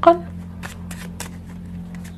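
Light, irregular clicks and rustles of tarot cards handled in the hand, over a steady low hum.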